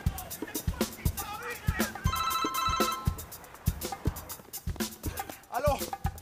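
Mobile phone ringing briefly about two seconds in: a short, pulsing electronic ring over background music with a steady beat.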